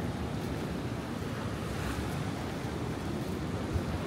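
Ocean surf washing steadily over the rocky shore, with wind buffeting the microphone.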